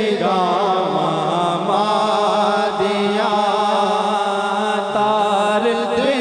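A man reciting a naat: a solo male voice sings a long, ornamented devotional melody into a microphone. A steady held tone sounds beneath the voice throughout.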